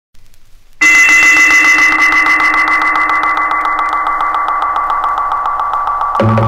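Electronic soundtrack drone that starts suddenly about a second in: a loud, machine-like buzz of several steady high and middle tones over a rapid, even pulse.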